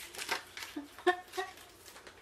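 Plastic icing bags from a gingerbread house kit being kneaded by hand to warm the icing: soft crinkling and squishing with a few short, sharp crackles, the loudest about a second in.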